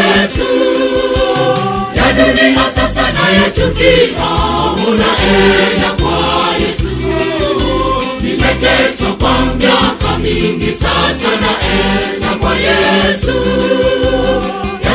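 Choir singing a Swahili gospel song with a band, with a heavy bass line coming in about two seconds in and a steady drum beat.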